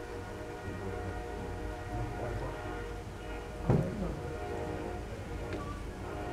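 A steady hum made of several held tones, with a single knock a little past the middle.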